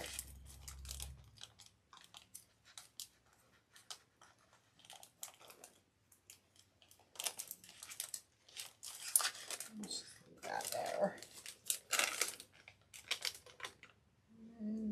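Beads being handled and threaded by hand, with a plastic bag of beads crinkling: a run of short clicks and rustles that gets busier about halfway through.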